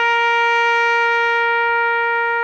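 Solo trumpet holding one long, steady note of a ceremonial call sounded for the honour salute at a police funeral.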